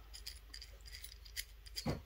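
Faint small clicks and rubbing as a thumb turns the worm screw of a cast stainless steel multi-tool's adjustable wrench, sliding the jaw open.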